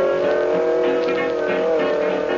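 Swing dance-band music with brass: a long held chord with a slight waver.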